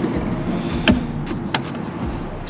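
Harley-Davidson Road Glide 3 trike's V-twin engine idling steadily, with two short clicks about a second in and just past halfway.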